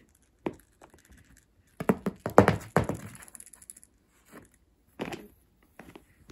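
A burst of soft thumps and taps, most of them bunched together a couple of seconds in, as a cat pounces and scrabbles after a butterfly wand toy on a shag carpet.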